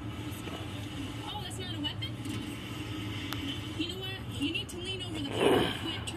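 Television audio re-recorded through the air by a phone: faint, indistinct voices over a steady low hum, with a short, louder rush of noise about five and a half seconds in.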